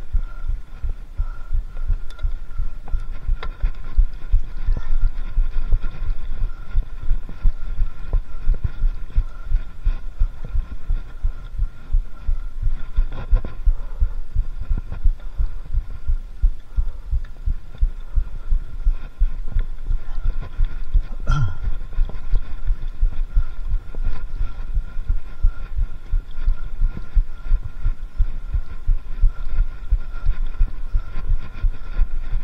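Mountain bike ridden slowly over bumpy forest singletrack, heard through a handlebar-mounted camera: a dense low rumble of knocks and thumps as the trail shakes the bike and the camera mount, with one sharper knock about two-thirds of the way through.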